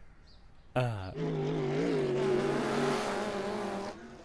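Car engine sound from a racing video game: a short falling rev about a second in, then a steady engine note with a slight waver over a hiss, which cuts off near the end.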